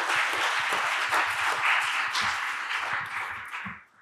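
Audience applauding, a steady patter of many hands clapping that fades out near the end.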